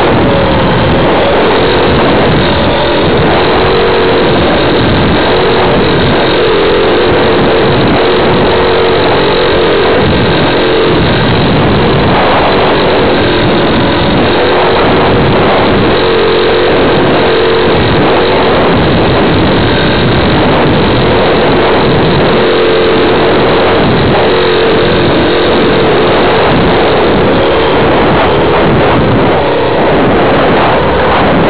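A radio-controlled model plane's motor and propeller drone steadily, heard from the plane's onboard camera with a constant rush of wind and hiss. The hum eases briefly about a third of the way in, then returns.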